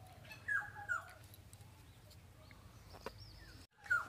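Short high-pitched animal calls: two close together about half a second and a second in, and another near the end, over faint steady background noise.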